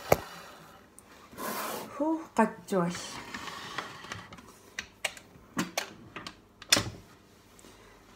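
Scattered knocks and clicks of a stainless steel stand-mixer bowl and a plastic measuring jug being handled and set in place, with a few quiet spoken words about two seconds in.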